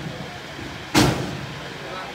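A single loud bang about a second in, with a short ringing tail that fades over about half a second: a metal strike on the cattle truck's body as a man works a long metal pole against its side rail.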